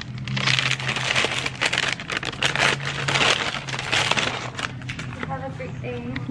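A plastic bag crinkling and rustling close to the microphone as it is handled and opened, in dense crackly bursts that die down near the end, over a steady low hum.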